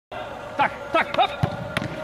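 A football being struck and caught in a goalkeeper reaction drill: two sharp thuds in the second half, after a few short shouted calls.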